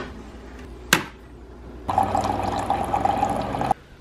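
Single-serve pod coffee maker: a sharp click about a second in, then about two seconds of steady hissing as coffee pours into a cup, cutting off suddenly near the end.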